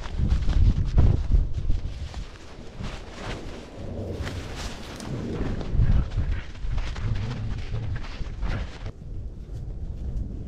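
Rumble and irregular knocks from a camera strapped to a dog's back harness as the dog moves about, with wind buffeting the microphone.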